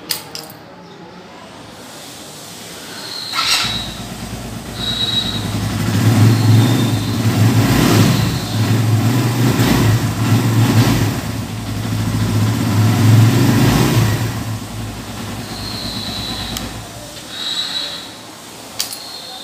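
Suzuki GS150 SE's 150 cc single-cylinder engine starting about three seconds in, then revved up and down several times before easing back toward idle.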